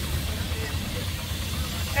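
Miniature steam traction engine driving past, a steady hiss over a low rumble.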